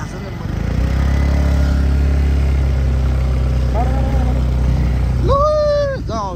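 A vehicle engine running at a steady speed, growing louder about a second in and holding even. A person's voice calls out briefly near the end.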